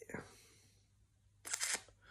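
A man's short spoken "yeah", then a pause of quiet room tone, then a brief sharp intake of breath about one and a half seconds in.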